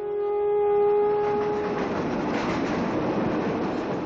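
A held musical note fades out over the first two seconds as a loud, steady rushing noise swells up and takes over.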